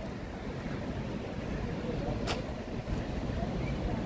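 Steady low rumble of outdoor background noise while walking along a promenade, with one short click a little past two seconds in.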